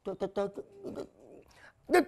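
A man's comic sobbing: a quick run of short, catching sobs in the first half-second, then a fainter whimper.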